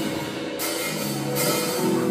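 Gospel band music: a drum kit with cymbals over sustained low notes.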